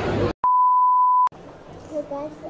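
A single loud electronic bleep: one steady, pure mid-pitched tone lasting just under a second that starts and stops abruptly, with dead silence on either side of it. The busy background noise before it cuts off suddenly.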